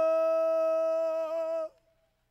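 A man's voice holding one long, high, steady note without words. It wavers slightly near the end and breaks off abruptly about one and a half seconds in.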